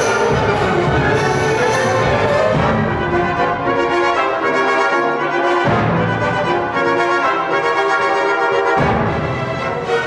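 Symphony orchestra playing live, with the brass section prominent in sustained chords that change every few seconds.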